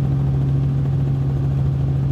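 Robinson R44 Raven II helicopter in cruise flight: its Lycoming IO-540 engine and rotors make a steady, unchanging low drone.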